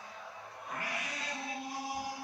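Ring announcer's amplified voice over the arena PA, drawn out in long held tones and echoing around the hall, starting about a second in.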